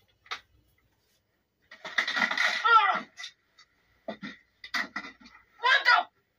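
A person's voice making wordless sounds: a drawn-out sound about two seconds in whose pitch falls at its end, then a few short sounds, and a stronger voiced sound near the end.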